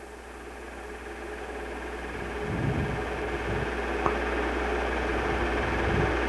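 Steady low hum with a hiss over it, growing slowly louder.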